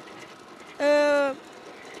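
Speech only: a woman's voice holding one drawn-out, level-pitched hesitation sound for about half a second in the middle of a sentence, with faint background noise around it.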